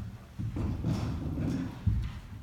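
A small child's bare feet running and hopping on a wooden floor. There are heavy thuds about half a second in and again near the end, with lighter footfalls between.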